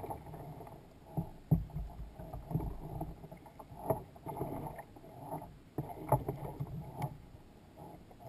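Knocks and bumps of gear being handled aboard a plastic sit-on-top kayak, with water against the hull. The knocks come irregularly, the loudest about a second and a half in and again about six seconds in.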